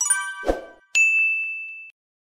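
Bright chime sound effects: a bell-like chord rings out, a short soft thud comes about half a second in, then a single high ding rings for about a second before cutting off.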